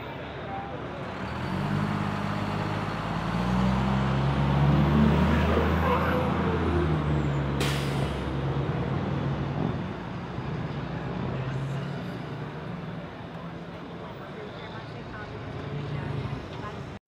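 Street traffic: a vehicle engine's low hum swells as it passes, loudest a few seconds in, then fades. A short sharp hiss comes about halfway through, over a steady background of traffic and voices.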